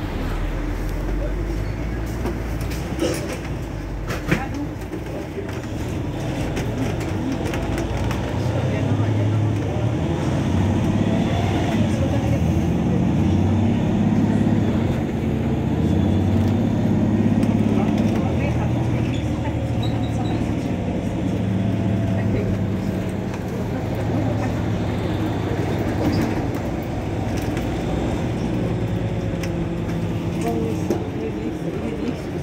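Diesel engine of a Mercedes-Benz Citaro C2 Euro 6 city bus idling, a steady low hum that grows a little stronger partway through, with two sharp clicks a few seconds in.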